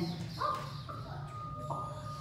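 Held, pitched vocal tones from the show's soundtrack, whose sounds are made entirely from voice. A steady high note sounds throughout, with fresh notes coming in about half a second in and again near the end, over a low hum.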